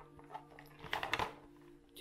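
Light handling noises from a small printed cardboard box being turned and opened in the hands: a few soft clicks and scrapes around the middle, over a faint steady hum.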